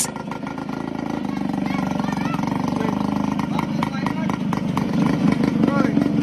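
Engine of a small open vehicle running steadily while under way, heard from on board; it grows a little louder over the first couple of seconds.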